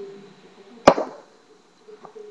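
A single sharp slap of a hand coming down on a tabletop, about a second in.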